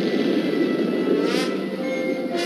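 Soundtrack of a 1970s animated science-fiction cartoon: a steady low rushing effect for a starship in flight with music under it, and a brief sweeping whoosh about one and a half seconds in.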